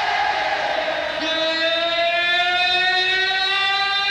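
Live rock concert audience recording: crowd noise, then about a second in a long sustained note with rich overtones comes in and slides slowly upward in pitch, still held at the end.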